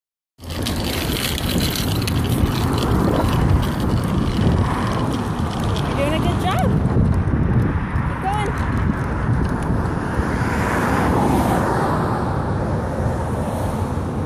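A child's small bike with training wheels rolling along a concrete sidewalk, heard as a steady rumbling noise, with a couple of short high voice sounds near the middle.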